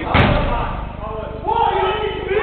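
A single hard bang of a football being struck, echoing briefly in a large hall, followed about a second later by men shouting.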